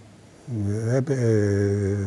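A man's voice holding one long, drawn-out hesitation sound at a steady low pitch, beginning about half a second in after a short gap.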